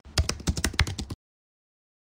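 Typing on a computer keyboard: a quick run of keystroke clicks entering a short command and Enter, lasting about a second, then stopping suddenly.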